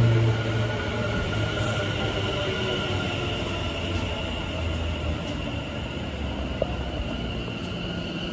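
West Midlands Railway Class 730 Aventra electric multiple unit drawing along the platform. Its low motor hum falls in pitch as it slows, with a steady high-pitched whine above.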